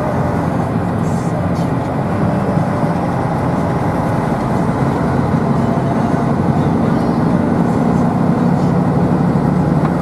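Engine and road noise of a vehicle driving, a steady low drone that grows a little louder in the second half of the clip.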